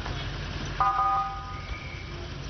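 Outdoor street noise with a low, steady rumble of vehicle engines. About a second in, a brief steady tone with several pitches sounds and fades out.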